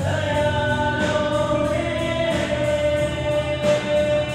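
A live amateur band playing a song with bass guitar, acoustic guitar, keyboard and drums behind a male singer, who holds one long note through most of the stretch, with cymbal hits at intervals.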